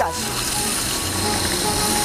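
Food processor motor running steadily, grinding walnuts with sugar, with background music underneath.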